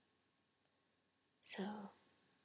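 Near silence with faint room tone, then a woman softly says one word, "So," near the end.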